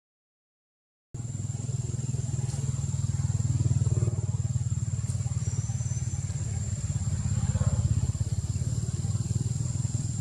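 Outdoor ambience: a steady low rumble with a constant thin high-pitched whine above it. It starts about a second in and swells slightly twice.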